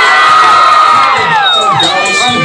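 A crowd of teenagers cheering and screaming, many high voices held together and then falling away in pitch near the end.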